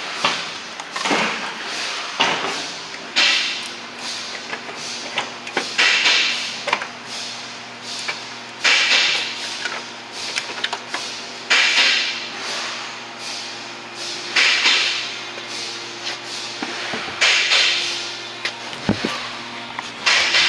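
Intake manifold being worked loose and pulled out of a car's engine bay: irregular scrapes, rustles and knocks of the plastic manifold against hoses and brackets, coming every second or few, over a steady low hum.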